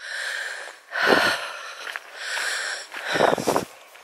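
A person breathing close to the microphone: a few noisy breaths, with heavier ones about a second in and near the end.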